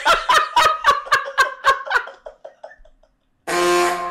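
A man laughing hard in rhythmic bursts, about four a second, that fade away over nearly three seconds. Near the end a loud, steady horn-like tone starts suddenly.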